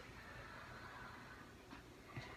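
Near silence: faint room tone, with one soft click near the end.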